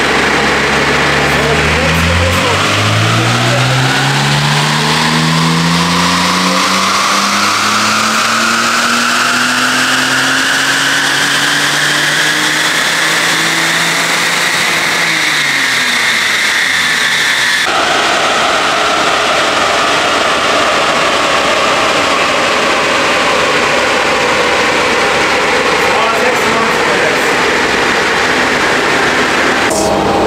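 The supercharged M54 2.5-litre inline-six of a BMW 325ti Compact on a chassis dyno in fourth gear, its pitch rising steadily for about fourteen seconds as it is pulled up through the revs, then falling away. About two-thirds of the way in, the sound changes abruptly to a steady rushing noise.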